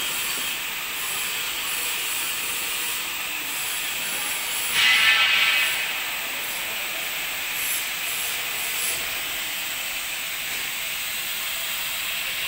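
Steady hiss of factory machinery running, with a louder burst of hiss lasting about a second around five seconds in.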